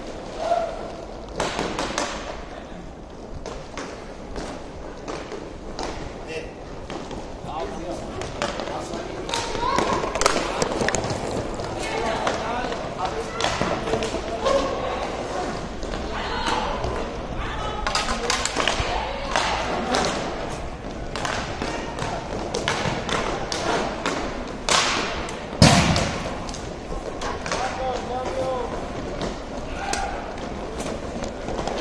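Inline hockey play: sticks clacking on the puck and skates on the rink floor, a run of short knocks and thuds throughout, and one loud bang against the boards near the end. Players' and spectators' voices call out through the middle.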